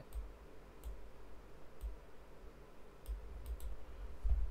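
Computer mouse clicking about six times, unevenly spaced, with three clicks close together near the end.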